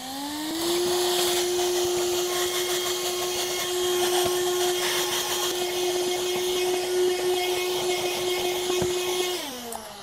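MECO cordless handheld vacuum cleaner motor spinning up, then running with a steady whine and rushing air as it sucks crumbs off carpet, winding down shortly before the end.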